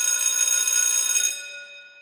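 Bell ringing rapidly with a fast clapper rattle, like an alarm-clock or telephone bell. It stops about a second and a half in, leaving the metal ringing to die away.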